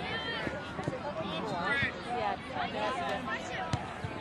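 Overlapping shouts and calls from youth soccer players and sideline spectators, with a single sharp thump near the end: a soccer ball being kicked.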